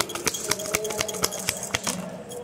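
Tarot cards being shuffled by hand: a quick, irregular run of crisp flicking clicks as the cards slap against each other.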